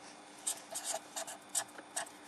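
Marker pen writing on paper: a quick run of short scratching strokes as numbers are written out.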